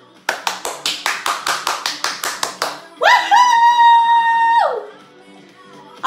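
Rapid hand clapping, about six claps a second for roughly two and a half seconds. A woman's voice then holds one high note for about a second and a half before dropping away.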